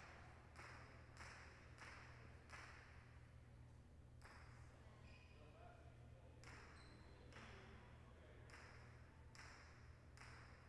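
Near silence: faint knocks echoing in a large hall, repeating roughly every half second to second with a pause in the middle, over a low steady hum.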